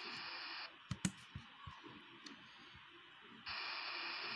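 A few sharp clicks on a laptop, the loudest pair about a second in and fainter ones after, as the slideshow is advanced. A faint steady hiss stops under a second in and comes back near the end.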